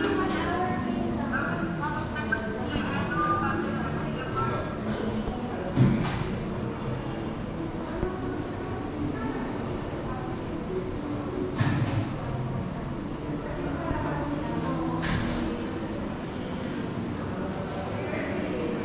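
Indistinct chatter of visitors' voices in a large exhibition hall, with no clear words. Two short thumps stand out, about six and twelve seconds in.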